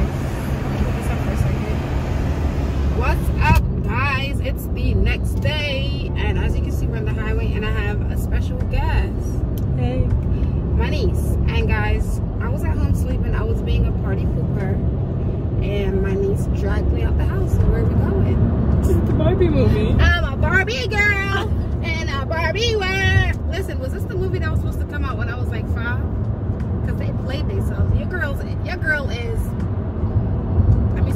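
Steady low road and engine rumble inside a moving car's cabin, under people talking.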